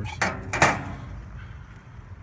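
Two metal clanks in quick succession within the first second, from the porcelain-enameled steel flavorizer bars of a Weber gas grill being lifted out of the firebox and set down.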